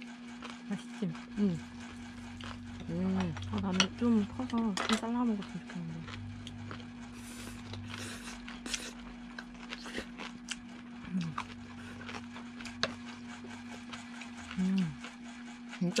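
Quiet eating at a table: scattered light clicks and scrapes of a spoon and bowl and of chewing, with a few short hummed voice murmurs about three to five seconds in, over a steady low hum.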